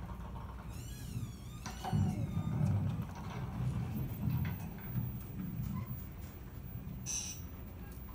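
Sound effects from an animatronic giant grasshopper exhibit, played through a speaker. A quick, rapidly repeating chirping trill comes about a second in, then a low rumble pulses on, with a short hiss near the end.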